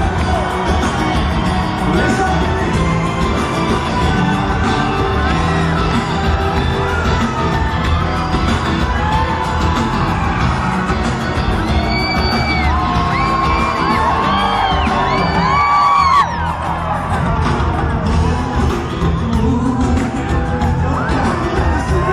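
Live Turkish pop song played by a full band, with a male lead singer's voice through the PA and audience whoops and shouts mixed in, heard loud and reverberant in a large hall.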